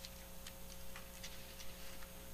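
Quiet room tone with a steady electrical hum and a few faint, irregularly spaced small clicks.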